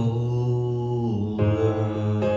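Music: a man holds one long sung note over a slow electric-piano backing track, with a change of chord about a second and a half in.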